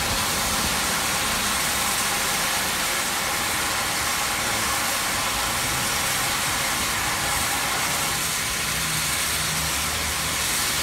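Standing GWR Castle class 4-6-0 steam locomotive blowing off steam in a steady hiss, with a low engine hum beneath.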